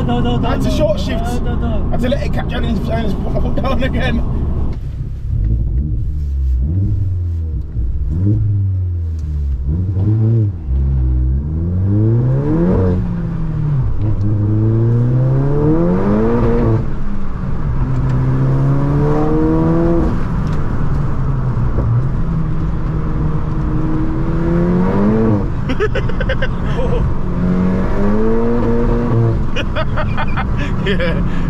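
Tuned Mk7 VW Golf GTI's turbocharged 2.0-litre four-cylinder, heard from inside the cabin under hard acceleration. It revs up again and again, its pitch dropping sharply at each upshift, then runs steadier between a couple more rises near the end.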